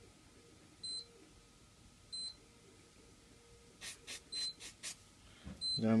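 Digital soldering station giving short, high electronic beeps, four times about a second or more apart, while it heats up toward its 400 °C set point. A quick run of short hissing sounds comes about four seconds in.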